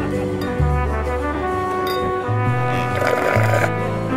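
Cartoon background music: a stepping bass line under sustained horn-like notes, with a short rasping noise about three seconds in.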